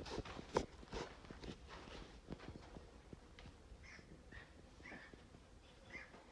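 Faint scuffs and knocks of footsteps moving over a loose dirt floor, louder in the first two seconds, followed by a few short, faint high chirps.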